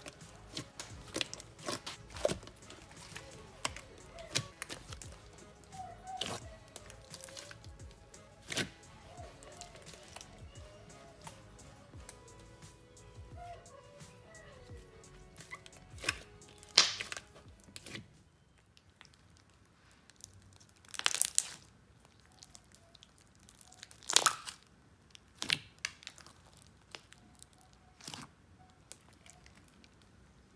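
Hands kneading and stretching a large batch of white basic slime in a plastic tub, with scattered wet clicks and crackles as the slime pops, the loudest bunched in the second half. Faint music underneath during the first half.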